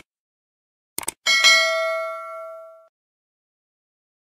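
Subscribe-button animation sound effect: two quick mouse clicks about a second in, then a bright bell ding that rings out and fades over about a second and a half.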